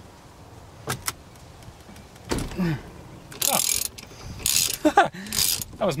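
Half-inch-drive ratchet with a 19 mm socket on a long extension working a steering-wheel nut. Two sharp clicks come about a second in, then three short bursts of rapid ratchet clicking, with strained grunts in between as the nut is loosened.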